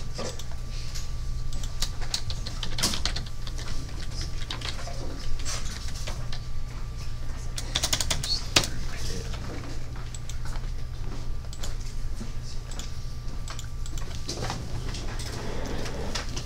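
Classroom room noise: scattered light clicks and taps, with a cluster about eight seconds in, over a steady low hum and faint voices.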